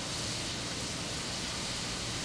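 Steady hiss of steam venting from a standing R class Hudson steam locomotive, even and unbroken.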